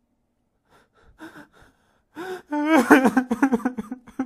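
A voice making faint breathy sounds, then a loud gasp-like onset followed by a quick run of short pitched vocal bursts in the second half.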